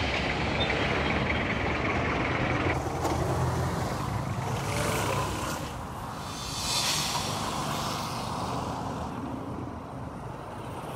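Road-traffic noise, a steady rumble of vehicles on nearby roads, with two hissing swells about halfway through.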